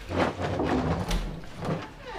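Chairs moving and a door being opened, with a few short knocks and rustling.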